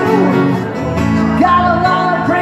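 Live music on electric and acoustic guitars: sustained chords under a melody line whose notes bend up and down.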